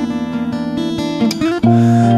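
Acoustic guitar strummed in a steady rhythm over long held keyboard chords, the instrumental accompaniment of a slow song; a louder low held note comes in near the end.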